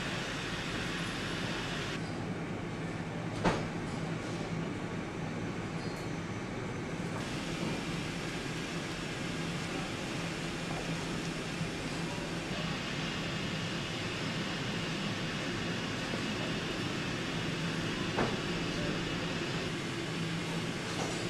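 Steady workshop background noise with a low hum. There is a sharp click about three and a half seconds in and a fainter one near the end.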